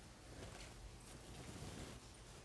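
Faint rustle and scratch of cotton thread being worked onto a metal crochet hook, barely above room tone.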